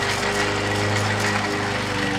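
Hand-cranked portable coffee grinder being turned, grinding coffee beans, over the steady engine drone of lawn mowers running in the background.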